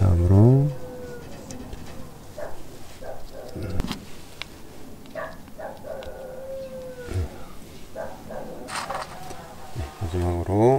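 A short pitched call, like an animal's, in the first second. After it, only a few light clicks as the small parts of a diaphragm carburetor are fitted together by hand.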